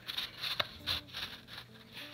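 Cardboard tray sliding out of a kraft-paper sleeve box: a few short scraping rustles of card rubbing on card.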